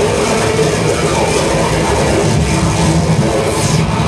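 Loud live noise music from electronic gear: a continuous dense wash of distorted noise over an uneven low rumble, its high hiss brightening near the end.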